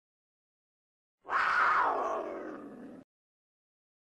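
A single big-cat roar sound effect starting about a second in, fading over about a second and a half and then cut off abruptly.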